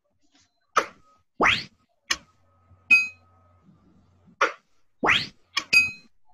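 Cartoon sound effects from an animated phonics lesson as pictures pop onto the screen: a handful of short pops and clicks, two quick rising whooshes, and two bright dings, each brief and separate.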